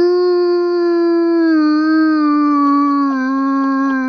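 A man imitating a basset hound's howl with his voice: one long held howl that sinks slowly in pitch.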